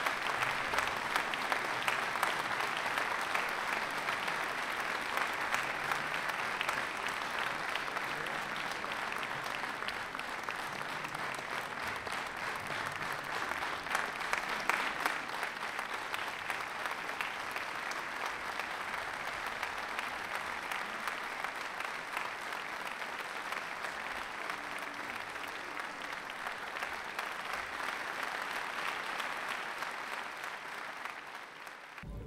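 Large concert-hall audience applauding: a dense, steady clatter of many hands clapping that eases slightly toward the end.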